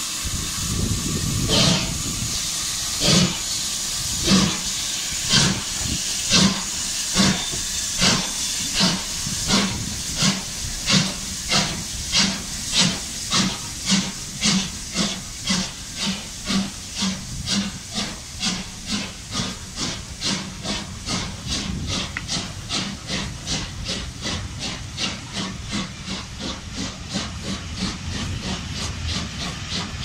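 Exhaust beats of a GWR Manor class 4-6-0 steam locomotive starting its train away, over a steady hiss of steam. The chuffs come about one a second at first and quicken steadily to a rapid beat as the train gathers speed, growing quieter in the second half.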